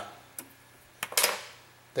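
A pause in a man's talk: a faint click, then about a second in another click followed by a short breathy hiss.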